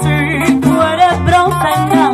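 Live Cuban son band playing an instrumental passage: melody lines from trumpet and acoustic guitar over a moving bass line and conga and bongo percussion.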